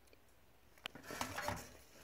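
Quiet handling noise: a single sharp click just under a second in, followed by soft scattered rustling and knocking as a hand moves around the breaker panel.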